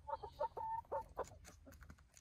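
Chickens clucking close by: a quick run of short clucks with one longer, drawn-out note about half a second in, and a few sharp clicks among them.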